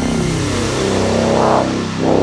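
Psytrance music in a breakdown: the drums and high percussion have dropped out, leaving a sustained synth chord and bass. A filtered synth swell rises and then falls away near the end.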